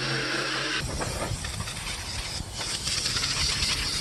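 Cordless jigsaw with a fine metal blade cutting through a van's sheet-metal roof, a steady motor tone under a harsh rasp. About a second in the sound changes to a steady, harsh hiss.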